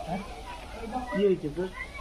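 A puppy whining in short arching cries, the strongest a little past the middle, while it is held by the head and collar.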